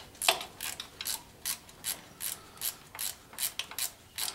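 Hand socket ratchet clicking in a steady rhythm, about two to three clicks a second, as it is worked back and forth to run in a transfer case mounting bolt.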